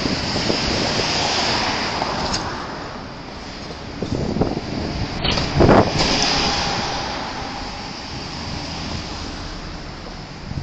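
Road traffic passing close by on a city street, cars going by in swells. A city bus passes right beside the curb about halfway through, the loudest moment.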